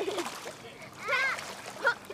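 Pool water splashing as a child kicks her feet in it from the pool edge, with children's high-pitched voices calling out over it.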